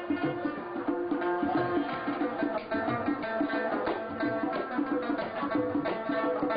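Afghan rubab being played: a fast plucked melody of quickly repeated notes with sharp attacks over ringing strings.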